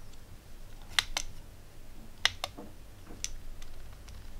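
Sharp, separate clicks, about six of them, roughly in pairs: the rotary encoder knob of a ZK-4KX buck-boost power supply module being turned through its detents to lower the current setting.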